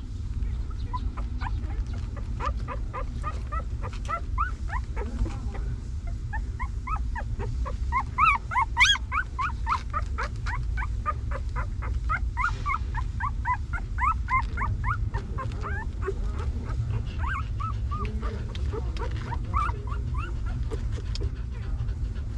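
Newborn puppy squeaking and whimpering in a rapid run of short, rising, high cries, several a second, growing loudest about eight seconds in and tapering near the end. A steady low rumble sits underneath.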